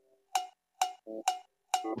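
Metronome count-in: four sharp, evenly spaced clicks at about two a second, each with a brief ring, marking time before the first chord.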